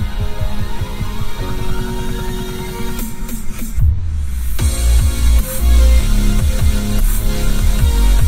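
Electronic dance music with a steady beat playing through the car's Bowers & Wilkins speaker system, heard inside the cabin of a 2021 Volvo V90. Partway through, the track thins out for a short break with a falling sweep, then comes back with heavy, deep bass.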